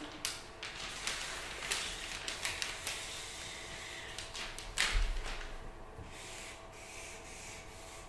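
A marker scratching across sheets of brown paper in repeated short strokes as a line is drawn, with one louder rustle and thud about five seconds in.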